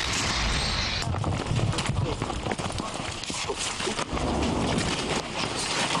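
The fading rush of an artillery gun's shot in the first second, then rustling and quick, irregular footfalls as the crew runs through brush and scrambles into a dugout to take cover from return fire.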